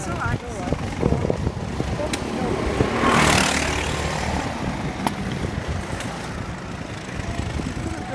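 Go-kart engines running as karts lap the track, with a louder burst of rushing noise about three seconds in.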